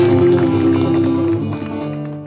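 Cretan lyra playing sustained bowed notes over plucked laouto accompaniment, an instrumental passage of Cretan folk music. It gets a little quieter near the end.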